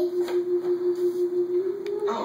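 A single steady musical tone from a television or game soundtrack, held and pulsing in loudness about four times a second, stepping up slightly in pitch near the end.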